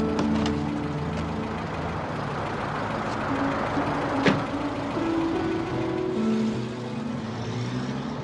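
Film score of held low notes over a car engine and road noise as a limousine pulls away. A single sharp knock comes about four seconds in.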